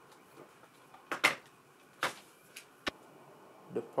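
A few sharp clicks and knocks, the loudest a quick double knock about a second in: a laptop's charger cable being plugged in and the laptop handled on a wooden desk.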